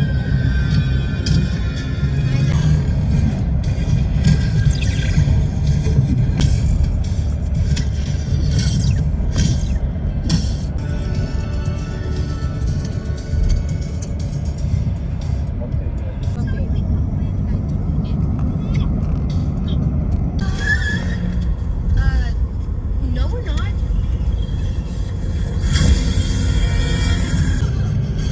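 Steady low road rumble inside a moving van's cabin, with music and voices playing over it.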